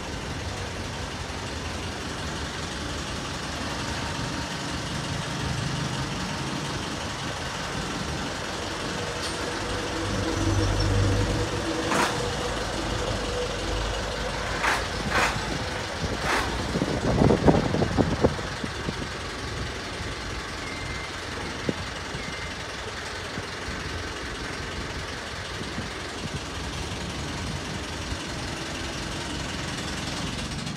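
Kubota M7000 tractor's diesel engine running at low speed as the tractor creeps forward onto a truck bed. The engine swells to a louder rumble about ten seconds in. A few sharp knocks follow, then a short burst of clatter a few seconds later.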